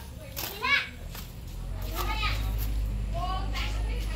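Children's voices calling out and chattering in high, sweeping tones, the loudest cry about half a second in, over a steady low rumble that sets in about a second in.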